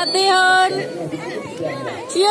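Chatter only: several people talking at once, with a high child's voice loudest in the first second.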